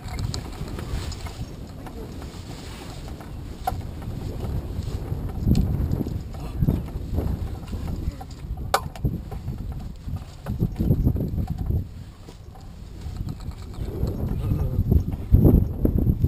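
Low, gusty rumble of wind on the microphone that swells and fades several times, mixed with rustling and knocking of harness and clothing as the two fliers climb out of a hang glider's harness. A single sharp click about nine seconds in.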